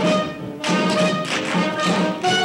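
Live pit band playing an up-tempo swing number with brass, picked up from a theater balcony with room echo. Sharp taps or hits mark the beat, and the music drops briefly just after the start before coming back in about half a second later.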